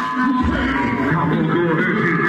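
Loud music played through a homemade car-audio speaker box with horn tweeters and woofers. The deep bass drops out for a moment at the start, then comes back in.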